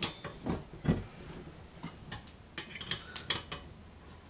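Light metallic clicks and taps of an Allen wrench seated in and turning the small grease-port plug on a brush cutter's gearbox head, a few separate sharp ticks spread out with quiet between them.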